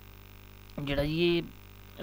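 Steady low electrical hum in the recording, with a man saying one short word about a second in.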